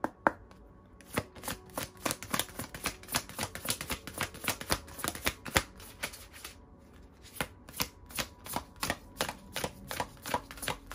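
Oracle card deck shuffled by hand: a quick, uneven run of short card-on-card flicks and slaps, several a second, with a brief lull about two-thirds through.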